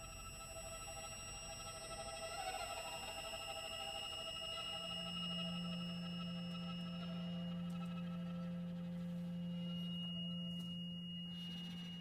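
Contemporary chamber ensemble playing quiet sustained held notes with no melody. A high steady tone sounds throughout, other middle tones fade out over the first half, and a low held note comes in about four to five seconds in.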